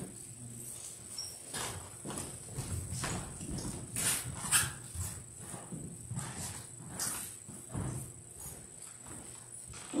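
Irregular soft knocks, footsteps and rustling as one person leaves the lectern and another steps up to it, with the sharpest knocks about four to five seconds in.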